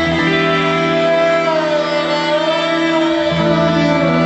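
A rock band playing live: sustained, droning held notes with a wavering, gliding melodic line above them, in the slow opening of a new song. The low notes shift about three seconds in.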